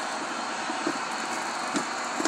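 Steady background hiss of room noise, with a couple of faint, brief handling sounds about a second in and near the end.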